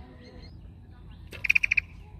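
An animal's short, loud call, about one and a half seconds in: a quick run of about six high notes in under half a second, over a low background murmur.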